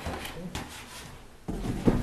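Handling noise at a podium: a cardboard box and a framed certificate being lifted and shifted, with rustling, light knocks and then a louder bump and knock about one and a half seconds in, picked up close by the podium microphone.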